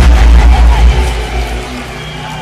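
A loud, deep rumble in a rock music remix soundtrack, starting just before and fading away over about a second and a half.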